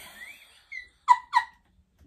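A woman's squeaky, mostly held-in giggling: a few faint high squeals, then two sharp high-pitched squeaks about a second in, each falling in pitch.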